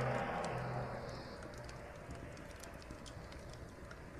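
Faint background noise of an old lecture tape recording: a steady low hum and hiss, with scattered light clicks. The hiss fades over the first second.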